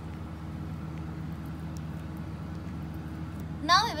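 A steady low hum, with a woman's voice starting near the end.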